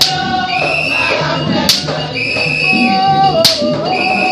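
Haitian Vodou ceremonial music: singing with percussion, a sharp strike recurring about every second and a half to two seconds.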